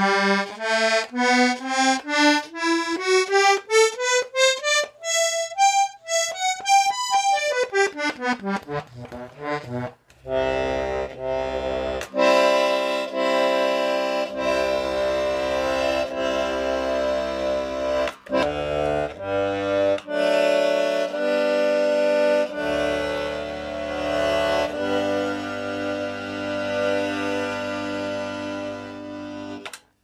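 Hohner Pokerwork one-row key-of-G button accordion being played: a quick run of single notes up the buttons and back down over the first ten seconds, then a slow tune in held chords over changing bass notes. The reeds are freshly tuned, set a little drier than a standard tremolo.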